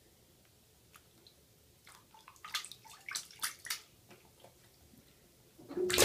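Small splashes and drips as a Sphynx cat pats at bathwater with its paw, a quick run of them about two to four seconds in. Just before the end a loud splashing begins as the cat falls into the tub.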